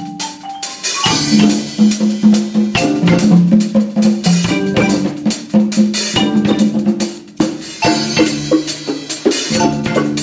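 Percussion ensemble playing together: drum kit with cymbals, marimba and bongos struck in a fast, dense rhythm, over a line of low mallet notes that keeps moving.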